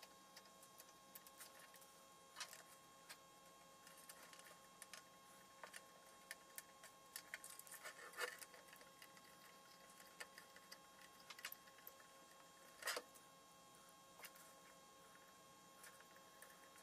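Faint scattered clicks and light taps of hands handling a small metal rack-unit chassis and its screws, with a sharper knock about halfway through and another about three-quarters through, over a faint steady whine.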